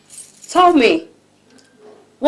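A brief high jingling rattle, then a woman's short wordless vocal exclamation of about half a second, falling in pitch.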